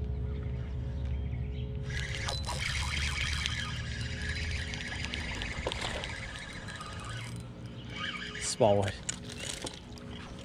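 A hooked bass splashing at the surface while the line is reeled in on a spinning reel, a noisy stretch of about five seconds. Near the end comes a brief exclamation in a person's voice.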